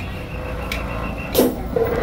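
A brief break in the loud procession music: a low street rumble with a faint steady high tone, broken by two sharp crashes, the second, about a second and a half in, the louder.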